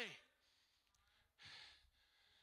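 Near silence in a pause of a man's speech, with one faint short breath into a handheld microphone about one and a half seconds in.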